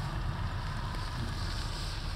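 Wind buffeting the microphone: a steady, low rumbling noise.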